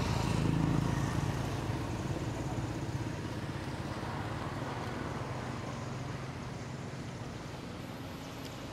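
Steady low hum of a motor vehicle engine running, slowly fading.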